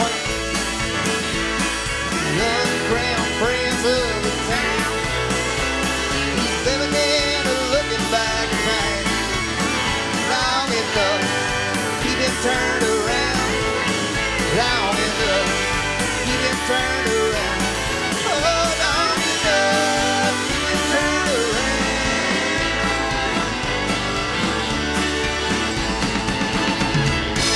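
Live country band playing an instrumental break: drums, bass and strummed acoustic guitar under a lead melody on fiddle that slides and wavers in pitch.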